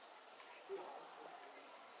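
A steady, high-pitched chorus of insects, crickets or cicadas, buzzing without a break.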